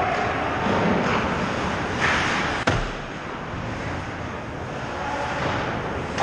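Ice hockey rink sound during play: a steady rush of skates on ice and the hall's noise. A short scrape comes about two seconds in, and a single sharp crack follows just after, like a puck or stick hitting the boards or glass.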